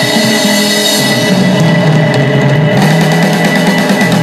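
Live electric blues band playing: drum kit, electric guitars and keyboard, with a walking low line moving under a steady high note.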